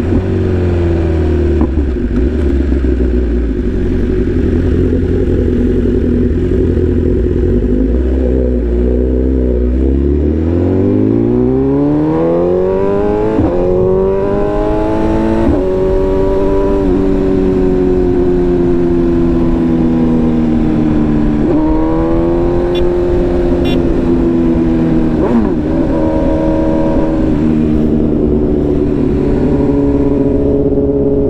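BMW S1000RR's inline-four engine heard from the rider's seat. It runs low and steady at first, then from about ten seconds in climbs in pitch through quick gear changes. It then settles into a steady cruise that swells and eases a little.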